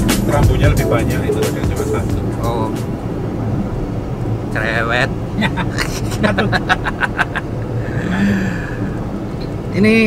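Steady road and engine noise inside the cabin of a moving car, with two men laughing and talking indistinctly around the middle.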